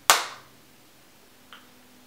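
Plastic funnel lid of a 23andMe saliva collection tube snapping shut with one loud, sharp click: the lid is fully closed and its stabilizing liquid is released into the saliva. A much fainter click follows about a second and a half later.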